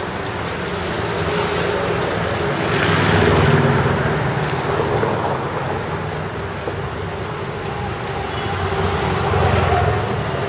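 Road traffic noise: motor vehicles running along the street, a steady rumble that swells louder about three seconds in and again near the end as vehicles pass close.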